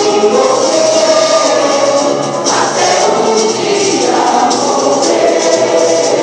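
Music with a choir singing long held notes over a light percussion beat.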